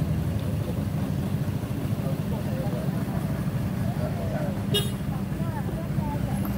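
An engine running steadily at a constant low speed, a low hum, with a short sharp click near the end.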